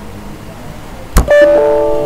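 A sharp click, then the Windows error alert chime: a short chord of several ringing tones that fades over about a second and a half. It sounds as a 'Device must be powered on' error box pops up, warning that the simulated IP phone is not powered.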